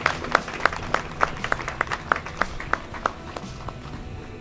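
A small group of people clapping by hand, the separate claps quickening, then thinning out and fading toward the end, over quiet background music.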